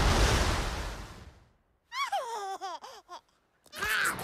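A loud rushing, crumbling noise fades away over the first second and a half. Then a cartoon squirrel character gives a high, squeaky giggle of about half a dozen quick chirps that fall in pitch.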